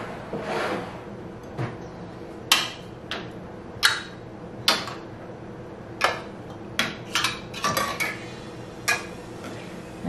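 Metal canning lids clinking against a glass bowl and jar mouths as they are lifted out with a magnetic lid wand and set on jars of tomato sauce: about a dozen short, sharp clinks at uneven intervals, several close together near the eight-second mark.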